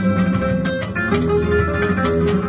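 Solo flamenco guitar playing soleá por bulerías: quick picked and strummed notes over held bass notes, with a new sustained note coming in about halfway through.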